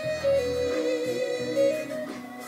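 Talk box lead melody, a vowel-like instrument tone shaped by the player's mouth, playing held notes with a wavering stretch in the middle, over a backing music track.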